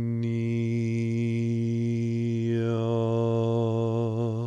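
A man's voice intoning 'harmonia' on one sustained low note, the vowel changing as the word is drawn out. Near the end the note begins to waver.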